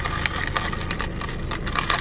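Ice cubes rattling and clicking in a plastic cup as a straw is stirred around an iced coffee, quick irregular clicks over a steady low hum inside the car.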